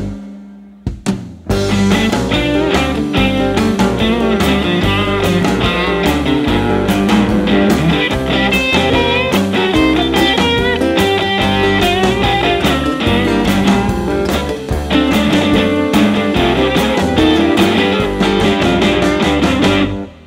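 Instrumental break in a blues-rock band song. The band drops out for about a second at the start, then comes back in with a guitar taking the lead.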